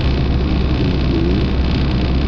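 Steady, loud low rumble of road vehicle noise mixed with wind on the microphone, unbroken throughout.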